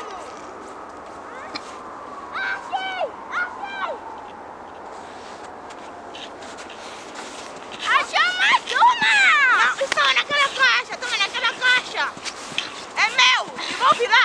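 Children's voices: excited, high-pitched shouts and squeals with no clear words. A few come early, then they grow loud and frequent from about eight seconds in.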